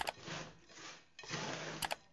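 Small hand trowel scraping and digging through a coarse mix of soil, crushed charcoal and cattle manure in a plastic tub, in two strokes, with sharp clicks at the start and near the end.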